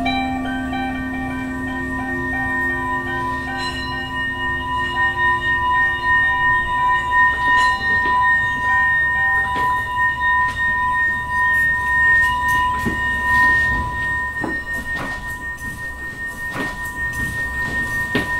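Brass singing bowls ringing in long, held tones at two pitches that waver slowly in strength, with a few soft knocks and plucked notes over them.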